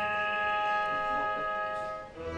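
Opera orchestra holding one sustained chord, steady in pitch, which fades near the end before the next passage begins.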